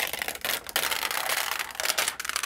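Plastic stencil film being peeled off the sticky surface of a ScanNCut cutting mat: a continuous crackling rip as the adhesive lets go.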